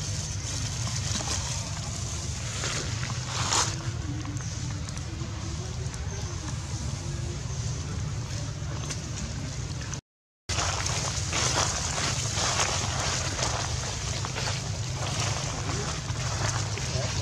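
Outdoor background noise with a steady low rumble, under faint distant voices. The sound drops out completely for about half a second just after the tenth second.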